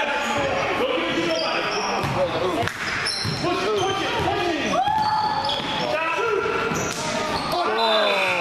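A basketball being dribbled on a hardwood gym floor during a game, with many short, high sneaker squeaks and shouting voices over it.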